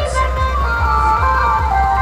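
Loud music played through a large DJ box speaker stack: a heavy, steady bass beat under a high melody of held notes that steps down in pitch.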